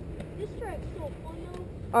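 Motocross bike engine idling with a low, steady rumble.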